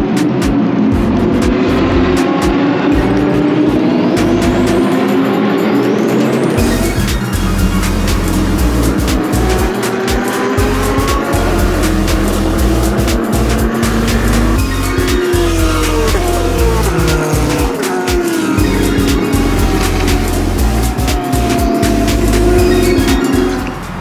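Sports-car racing engines at race speed, pitches climbing and dropping as cars rev through the gears and pass. Background music with a steady beat comes in under the engines about seven seconds in.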